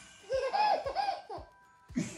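A baby laughing in a quick run of short, high giggles while being played with, with a fresh burst of laughter starting near the end.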